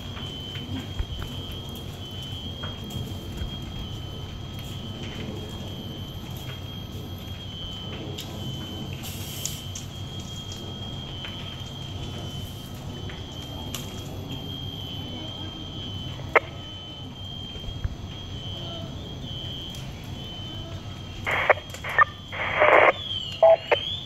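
Smoke alarm sounding from the smoke-filled building: a steady high-pitched electronic tone with short regular breaks, over a steady low rumble.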